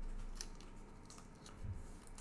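Cardboard trading cards being handled: a few short, sharp scrapes as cards slide against each other and off a stack, with a couple of soft knocks on the table.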